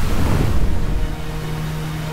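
A waterfall rushing, as a steady, full hiss of falling water. A low musical swell comes in at the start, and a held background-music note joins from about a second in.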